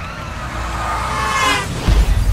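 Dramatised crash sound effect: a whine rising in pitch and growing louder for about a second and a half, cut off by a heavy, deep impact near the end.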